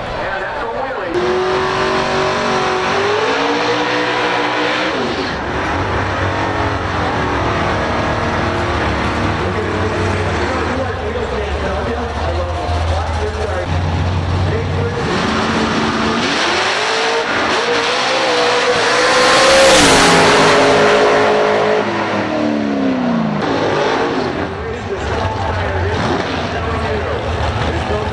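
Drag race cars' engines running hard on the strip, the engine note rising and falling over and over with a deep rumble underneath. The sound swells to its loudest about twenty seconds in and falls back a couple of seconds later.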